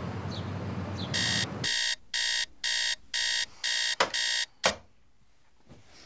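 Bedside digital alarm clock beeping, seven sharp electronic beeps at about two a second, then stopping. Two sharp clicks come as the beeping ends.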